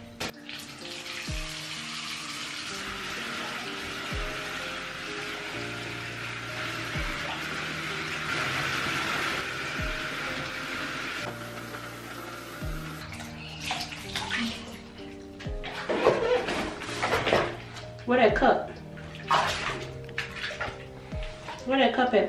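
Water pouring from a bathtub tap into a tub full of bubble bath: a steady rush that cuts off suddenly about halfway through. After that, short splashes of a child's hands in the bathwater.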